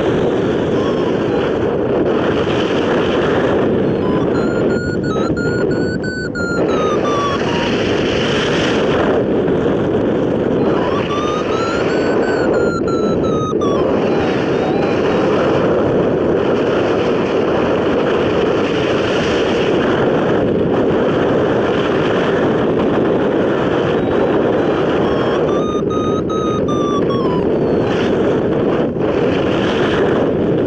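Steady wind rushing over the hang glider and the microphone. A hang-gliding variometer beeps in three runs, about five, twelve and twenty-six seconds in; in each run the pitch rises and then falls, as the glider's climb in lift strengthens and then eases.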